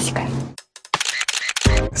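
A rapid run of sharp mechanical clicks lasting about half a second, a stopwatch-style sound effect marking the start of a countdown timer.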